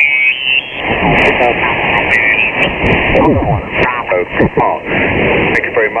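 Kenwood TS-590 HF receiver being tuned across the 40-metre band in lower sideband: band noise with garbled, mistuned voices, their pitch sliding as the dial moves past stations.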